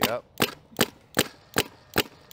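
Paintball marker firing in a steady string of single shots, about two and a half a second, with six sharp cracks in two seconds.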